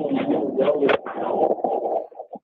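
A caller's voice over a phone line breaking up into garbled, warbling digital distortion as the connection drops out. The sound is muffled and thin, with the words lost.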